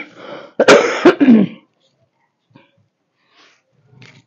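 A person clearing their throat with a cough: a short sharp catch, then a louder, harsh burst about half a second later that lasts about a second and trails off with a falling voice. Faint rustling of cloth follows.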